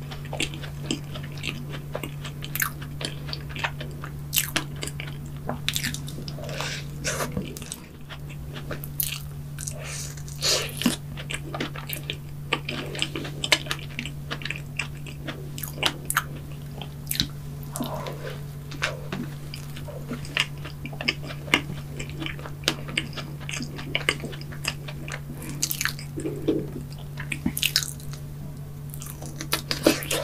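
Close-miked biting and chewing of a strawberry-topped whipped-cream donut and fresh strawberries: many irregular wet mouth clicks and smacks. A steady low hum runs underneath.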